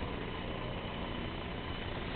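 Steady vehicle engine and road noise, a low rumble with a faint thin high whine held through it.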